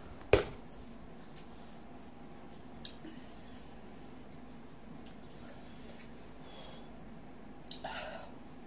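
A single sharp knock, as a jar of wafer sticks is set down on a wooden table, followed by quiet room tone with a faint steady hum.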